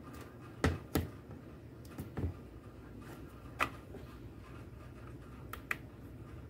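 About half a dozen separate sharp clicks and light knocks: a small digital pocket scale being switched on and tared by its buttons, and a roll of tape set down on its metal pan.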